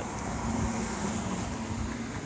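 Steady outdoor background noise: a low rumble with a faint steady hum.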